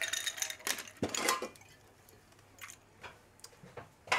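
Glassware and bottles clinking and knocking on a bar counter as a drink is mixed: a cluster of clinks in the first second and a half, then a few faint, scattered ticks.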